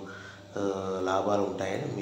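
A man's voice speaking in long, drawn-out, sing-song phrases over a steady low hum.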